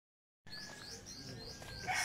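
Small birds chirping faintly outdoors, short high notes repeating a few times a second, starting about half a second in.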